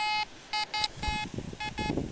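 Fisher F22 metal detector giving its target signal: a run of short beeps at one steady pitch, the first the longest, repeating as the coil is swept back and forth over a buried metal target.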